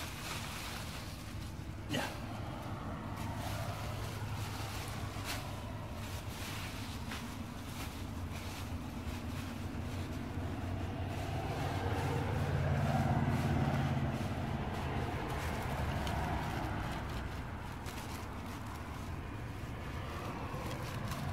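A motor vehicle's engine running, growing louder toward the middle and then fading back. Thin plastic trash bags crinkle and rustle as they are handled, with a sharper tick about two seconds in.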